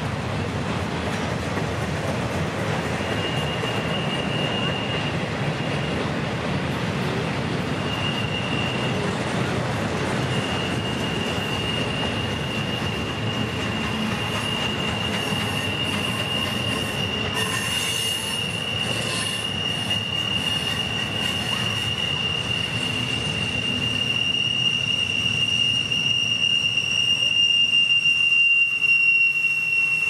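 Norfolk Southern intermodal freight cars rolling past, the wheels running with a steady rumble and a single high wheel-flange squeal from the curve. The squeal comes and goes at first, then holds steady and grows louder near the end, with a second, higher squeal joining in.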